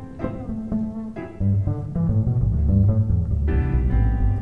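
Jazz band playing an instrumental passage without vocals, a plucked bass line under chords; the bass grows louder about a second and a half in.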